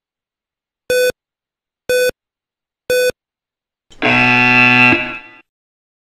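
Yo-Yo intermittent recovery test audio cue: three short electronic beeps a second apart counting down the end of the recovery period, then a longer, lower buzzer tone of about a second that signals the start of the next 20 m shuttle.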